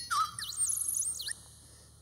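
A short high-pitched electronic whistle-like tone used as a comic sound effect in the film's soundtrack. It dips in pitch at once, holds, with swooping overtones above it, and cuts off about a second and a half in.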